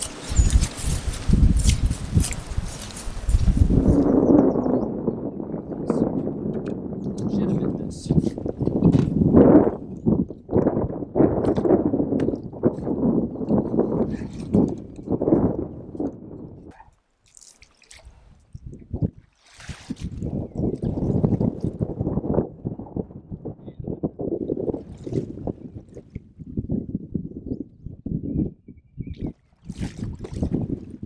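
Paddling a kayak: a rushing noise for the first few seconds, then irregular muffled knocks, rumbles and water sloshing from paddle strokes and the hull, with a short lull partway through.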